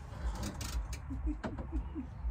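A pigeon cooing: a short run of four or five low, soft notes in the second half, over a steady low background rumble.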